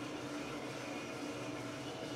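Gas-fired drum coffee roaster running steadily: a low, even rushing noise with a faint hum from the turning drum, burner and fan. The flame is at full, with the beans at about 300 degrees and entering the Maillard stage.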